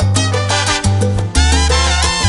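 Salsa band playing an instrumental passage, with the brass section over a moving bass line and percussion, and no singing.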